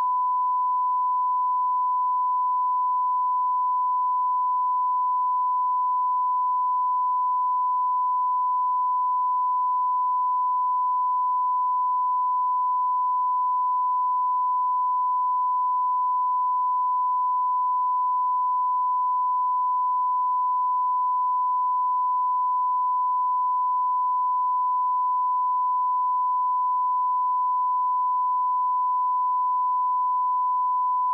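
Broadcast line-up test tone: a single steady pure tone at the standard 1 kHz reference pitch, unbroken and unchanging in level. It is the alignment signal that runs with colour bars before a programme starts.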